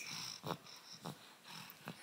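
Soft snuffly breathing and a few faint mouth clicks from a baby chewing on a rubber duck toy.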